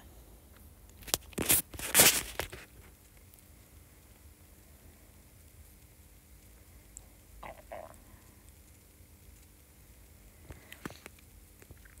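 Two brief rustling noises, about one and two seconds in, then quiet room tone with a few faint soft sounds.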